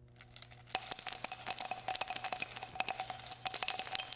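Bell-ringing sound effect: small bells struck in rapid, uneven strokes with a bright, high ring, starting about three-quarters of a second in.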